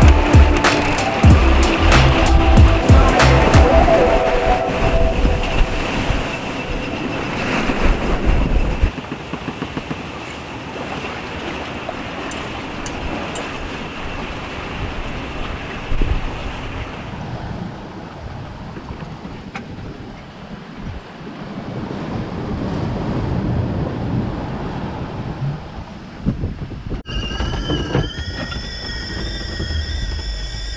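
Music with a beat for the first several seconds, giving way to a steady wash of wind and water around a sailboat under way. Near the end a stovetop kettle starts whistling at the boil: several tones at once, sliding slightly upward.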